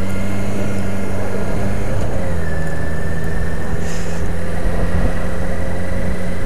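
Motorcycle engine running steadily while riding at town speed, heard from a helmet camera; its note drops slightly about two seconds in.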